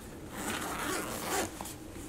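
Zipper on the side compartment of an Ape Case ACPRO1700 camera sling bag being pulled open in one pull lasting about a second.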